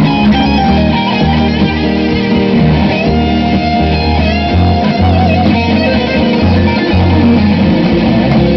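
Live acoustic trio playing an instrumental passage with no singing: two guitars over a double bass plucking steady low notes. A guitar lead line is held through the middle.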